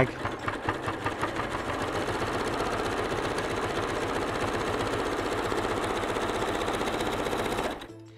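Elna electric sewing machine sewing a zigzag stitch along a raw fabric edge: the needle strokes pick up speed over the first second or two, run fast and steady, then stop just before the end.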